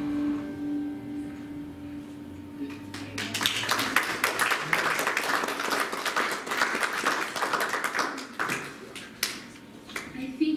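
The last strummed chord of an acoustic guitar rings out and fades over the first couple of seconds. About three seconds in, an audience starts applauding for about six seconds, then dies away.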